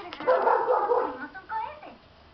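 Puppy barking: a loud burst of barks in the first second, then one shorter bark near the end.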